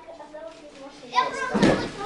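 Children's voices, and about one and a half seconds in a loud, heavy thump of a child dropping from a high bar onto stacked crash mats.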